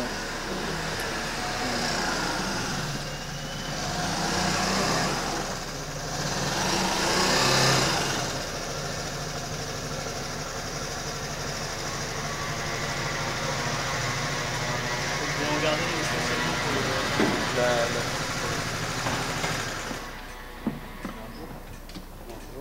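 Urban street traffic: a motor vehicle engine runs with a steady low hum, and a few louder swells of passing traffic come in the first eight seconds. The level drops away near the end.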